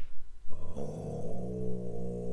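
Time-stretched sample of deep Tibetan-style chanting played from a software sampler: a low, droning stack of steady tones that comes in about half a second in and holds, smeared into a continuous drone by the stretching.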